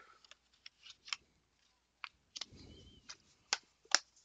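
Blu-ray steelbook case being handled: a string of faint, sharp clicks and taps, about six of them, the loudest near the end, with a short soft rustle in the middle.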